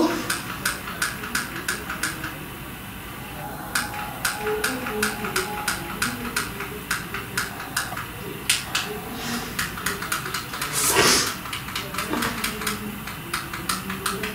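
Rapid, regular button clicks of a handheld presentation remote, about three a second, each click skipping the slideshow one slide on. The clicking stops briefly about three and a half seconds in, and a brief louder noise comes near eleven seconds.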